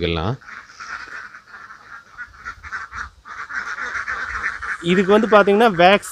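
A large flock of domestic ducks quacking together in a dense, continuous chatter that dips briefly about three seconds in. A man's voice cuts in over the flock near the end.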